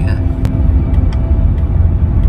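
Steady low rumble of a moving car, heard from inside the cabin, with one sharp click about half a second in.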